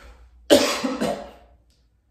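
A man coughing twice in quick succession, a sharp first cough about half a second in and a second one about half a second later.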